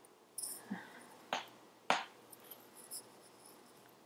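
Hands handling a stuffed crochet cushion: faint scratchy rustles of the yarn, with two sharp clicks, one a little over a second in and the other about two seconds in.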